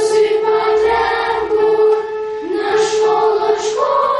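A group of children singing a song together in unison, holding long notes.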